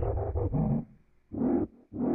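Heavily effect-processed, distorted audio, deep and growl-like, with sliding pitch. It comes in three chopped bursts separated by abrupt gaps.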